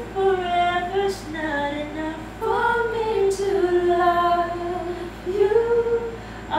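Unaccompanied female singing: a melody of held notes moving between pitches, with no instrument behind it.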